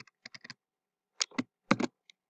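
Computer keyboard being typed on: a quick run of keystrokes, a pause, then a few more key presses, the last pair the loudest.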